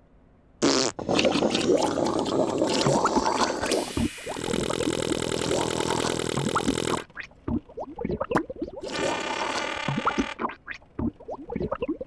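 The Tubby Custard machine's comic sound effects as it runs. A busy clatter starts about half a second in, then come two long buzzing whirs with squelchy splats between them, as custard is squirted into the bowl.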